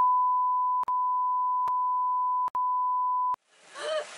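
Censor bleep: a steady, high, pure beep tone laid over the soundtrack. It breaks off briefly twice and stops shortly before the end, when a voice comes back in.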